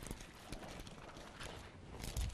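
Faint rustling and a few light taps from Bible pages being leafed through, over quiet studio room tone.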